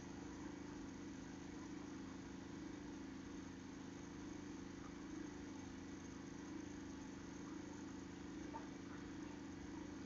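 Faint, steady low hum with a few held tones and a light hiss: background room tone, with no distinct events.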